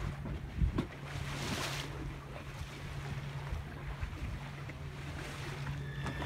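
Water rushing past a small sailboat's hull and wind on the microphone, under a steady low hum from the Torqeedo electric outboard motor running. A brief louder rush comes about a second and a half in.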